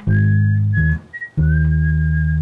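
Electric bass playing long held low notes, breaking off briefly about a second in and then sounding one long note. Above it, a thin, pure-toned high lead melody slides up into each note.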